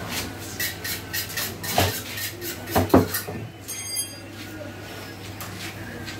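Butchering work sounds at a meat stall: light metallic clinks and knocks from knives and tools, with two louder knocks about two and three seconds in, over a steady low hum.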